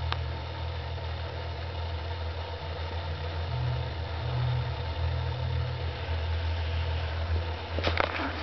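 A steady low hum, like a fan or appliance running in the room, with a click at the start and a few sharp clicks near the end.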